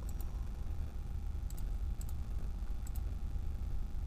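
Faint, short ticks of key presses on a Sharp copier's touchscreen keyboard as letters are typed, about five spread unevenly through the few seconds, over a steady low hum.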